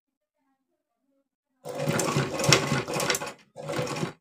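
Household sewing machine stitching gathered fabric: one run of stitching starts about one and a half seconds in and lasts nearly two seconds, then after a brief stop a shorter run near the end.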